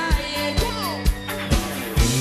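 Live pop band music with a steady kick-drum beat about twice a second under guitar and melodic lines.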